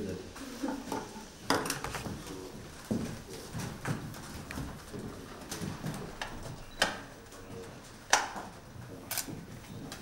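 Low murmuring voices and shuffling, broken by a handful of scattered sharp clicks and taps, the loudest about eight seconds in; a brief laugh at the start.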